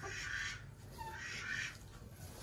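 Two faint, breathy calls from a broody domestic goose at its nest of eggs, each about half a second long, one near the start and one past the middle.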